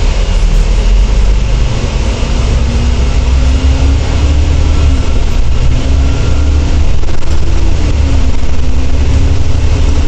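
Volvo B10TL double-decker bus's Volvo D10A six-cylinder diesel, heard from inside on the upper deck as the bus pulls away and accelerates. A deep rumble under an engine note that rises, then twice drops back and climbs again as the ZF automatic gearbox shifts up.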